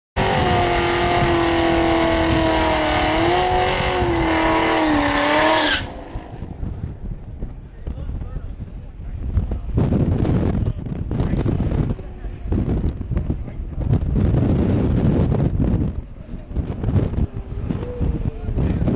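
A 2010 Shelby Mustang's V8 held at high revs with its pitch wavering, as in a burnout, cutting off suddenly about six seconds in. After that comes lower, uneven engine and outdoor noise that swells a few times.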